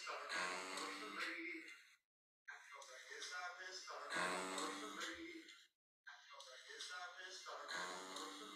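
Phone recording, played from the phone's speaker into a microphone, of a hospital ventilator giving out a drawn-out, humming sound like a chanted 'Om'. It repeats about every three seconds, with short silences between.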